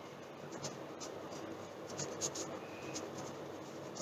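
Pen writing on notebook paper: faint, intermittent short strokes.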